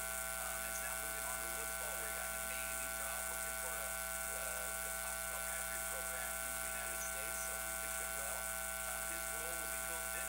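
A steady electrical buzz made of several held tones runs throughout, louder than a man's faint, muffled voice talking beneath it. The buzz swamps the speech so that the words are hard to make out.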